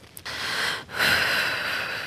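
A crying woman breathing heavily: two long breaths, the second starting about a second in and lasting over a second.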